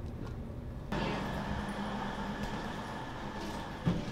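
Steady low rumble and hum inside a moving passenger train carriage. It turns suddenly louder and brighter about a second in, and there is a short thump near the end.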